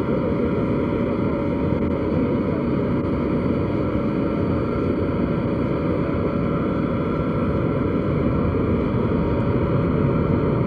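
Aircraft engines running steadily: a constant drone with several high steady tones on top.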